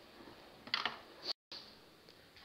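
Utensils rattling in a kitchen drawer as someone rummages through it: two short clattering bursts, the sound cutting out abruptly for an instant just after the second.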